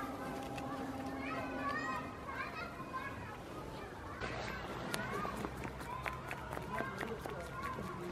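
A goat crunching a cucumber held out by hand, with a run of short crisp snaps through the second half. High, wavering voice-like calls go on in the background throughout.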